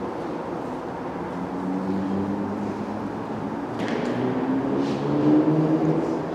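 Steady low rumble of a large, echoing arena, with indistinct murmuring voices mixed in.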